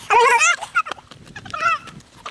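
Two high-pitched, wavering whimpering cries from a voice: a loud one right at the start and a shorter, fainter one near the end.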